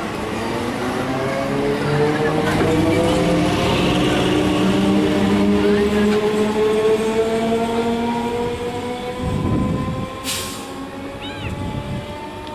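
Electric multiple unit local train pulling out of a station: its traction motors whine in several tones that rise steadily in pitch as it accelerates, over the rumble of the wheels on the rails. The sound falls away about ten seconds in as the train moves off.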